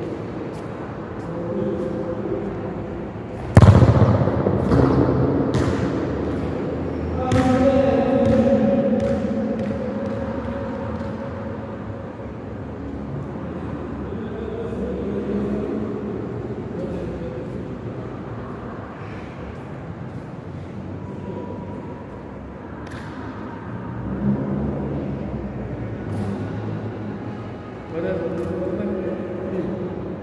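A football kicked and bouncing on an indoor futsal court: one loud impact about three and a half seconds in, then several smaller knocks of the ball over the next few seconds, echoing in the large hall.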